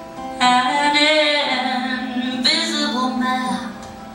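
A woman singing a live love song with acoustic guitar accompaniment, holding long, bending notes in two phrases. The first begins about half a second in and the second about two and a half seconds in.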